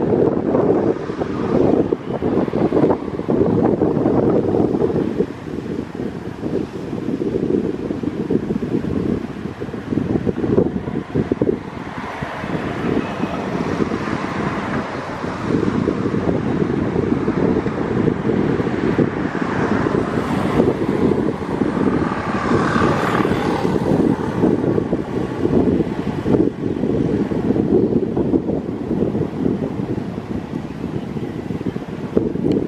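Wind on a compact camera's built-in microphone: a low rumble that rises and falls in gusts.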